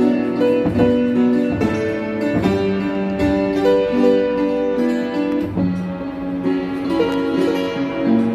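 Upright piano playing a slow hymn in chords with a melody on top. The notes ring on and change every half second to a second, at an even level.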